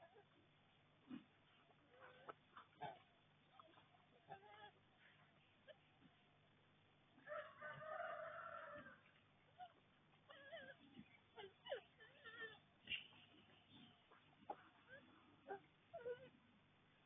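Faint scattered rustles and clicks of young wild boar rooting and snuffling in soil and leaf litter. About seven seconds in, a rooster crows once, lasting under two seconds, the loudest sound here.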